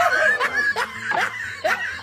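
A person laughing in a string of short, repeated bursts.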